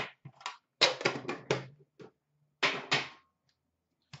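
Metal Upper Deck hockey-card tins being handled and opened: a quick run of about four sharp clacks about a second in, a single click at two seconds, and two more clacks near three seconds.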